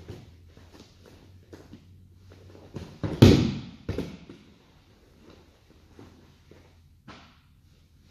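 A person's body landing heavily on a padded grappling mat during a takedown, a little over three seconds in, with a smaller impact just before and another just after. Faint scuffing and shuffling on the mat follows.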